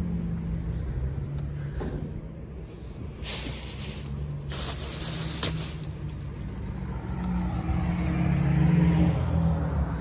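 A vehicle engine running steadily as a low hum, with two short bursts of hiss about three seconds and about four and a half seconds in.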